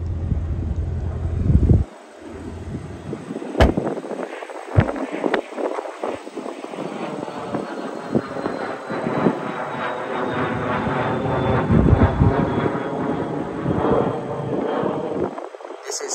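An airplane passes overhead, its engine tone gradually sliding down in pitch and growing loudest about twelve seconds in. Wind rumbles on the microphone for the first two seconds, and a few sharp knocks come around four to five seconds in.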